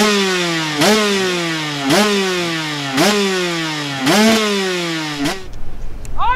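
Two-stroke KTM 150 SX motocross bike being revved in sharp throttle blips, about one a second: each snaps the revs up, then lets them sink slowly back. Five blips, then the sound cuts off suddenly a little after five seconds in.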